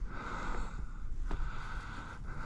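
Wind rumbling on the microphone over faint outdoor hiss, with a single light click a little over a second in.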